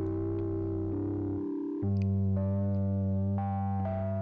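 Playback of a song being mixed: sustained electric-piano-type keyboard chords over a held bass note, with a chord change about two seconds in.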